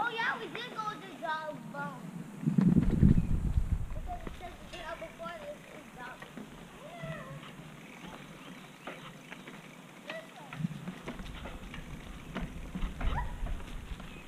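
High-pitched children's voices calling out in short wavering cries, heard while riding a mountain bike on a dirt trail. A loud burst of low rumble on the microphone comes about three seconds in, and more low rumble follows near the end.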